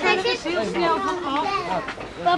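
Children's voices talking, unclear speech from start to end.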